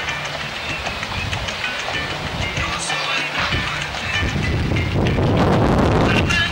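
Show-jumping horse cantering on grass, its hoofbeats in a steady rolling rhythm over background music; the background noise grows louder about four seconds in.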